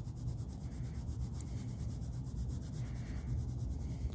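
Black colored pencil shading on paper, quick steady back-and-forth strokes making a dry scratching rub.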